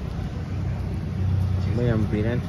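A vehicle engine idling, a steady low hum with no change in pitch; a voice begins near the end.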